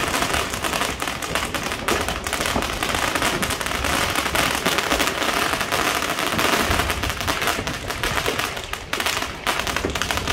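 Fireworks and firecrackers crackling and popping continuously and densely, with a ground firework in the street below throwing up sparks.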